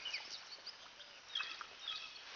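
Small birds chirping in the background: scattered short, high notes, in a cluster near the start and another just past the middle, over faint outdoor ambience.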